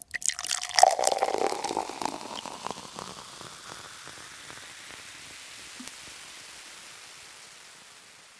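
Beer poured into a glass, loudest about a second in, then the head fizzing and crackling as the bubbles settle, fading away slowly.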